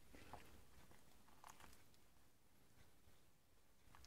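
Near silence with a few faint soft clicks and squishes: a plastic serving spoon stirring ravioli and meatballs in thick tomato sauce in a ceramic crock pot.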